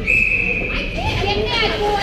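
A short, shrill, steady high tone lasting under a second, then spectators' voices calling and shouting in an ice rink, with the rink's hollow echo.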